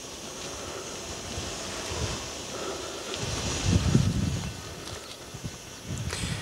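Wind buffeting the camera microphone in the open air, with an uneven low rumble that swells into a stronger gust about three to four seconds in.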